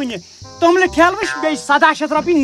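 A man talking, over a steady high-pitched chirring of insects.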